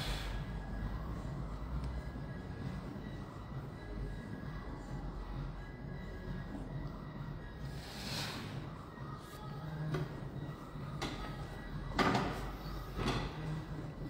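Plate-loaded chest press machine in use, over a low steady hum with faint background music. There is a soft rush of sound about eight seconds in, and several sharp knocks near the end as the loaded arms come down, the loudest about twelve seconds in.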